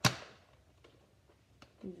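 A Nerf blaster firing one dart: a single sharp, loud snap that dies away within about half a second, followed by two faint ticks.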